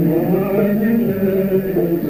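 Male voice singing a held, chanted melodic line of traditional Algerian music from Constantine.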